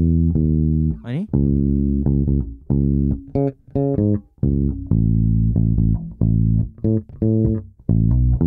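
Electric bass guitar played solo, a phrase of plucked notes held with short gaps between them, with an upward slide about a second in and a run of short, quick notes around the middle.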